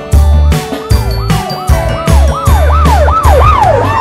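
Cartoon police-car siren, a quick rising-and-falling wail repeating about three times a second, coming in about a second in and growing louder. Under it runs background music with a steady beat.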